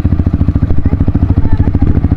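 Yamaha WR155 dirt bike's single-cylinder engine running at low revs, a steady rapid train of firing pulses close to the microphone.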